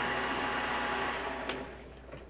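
Small metal lathe running with a steady motor hum, then a click about one and a half seconds in as it is switched off, after which the sound quickly dies away as the spindle stops.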